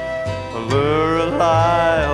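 Country-folk song: a male voice sings a long, drawn-out refrain syllable over acoustic guitar, coming in about half a second in, with the guitar notes ringing before it.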